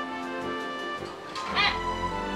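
Background music with a steady melody; about one and a half seconds in, a common hill myna gives one short, loud, wavering call.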